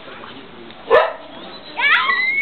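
A dog barks once, short and loud, about a second in, and a second, higher call begins near the end, over a background murmur of voices.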